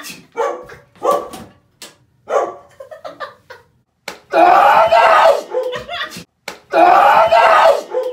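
A man and a woman laughing in bursts, then two loud, long shrieking laughs, about four and six and a half seconds in, as a pie is smashed into the man's face.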